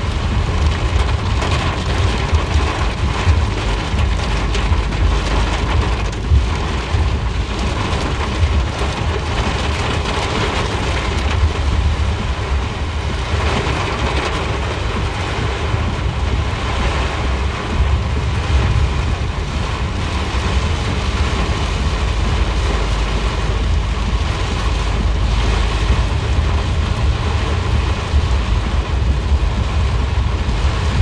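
Heavy rain pelting the roof and glass of a car, heard from inside the cabin: a steady, loud hiss over a deep rumble.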